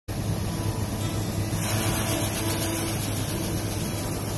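Combine harvester running steadily while unloading corn through its auger into a gravity wagon: a deep engine hum with a hiss above it that grows louder about a second and a half in.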